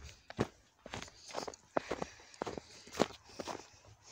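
Footsteps crunching through snow, uneven steps about two to three a second.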